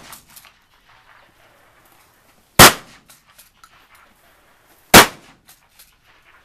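Shotgun fired twice, about two and a half seconds apart, with the ringing tail of a previous shot at the very start. A few faint clicks and knocks follow each shot.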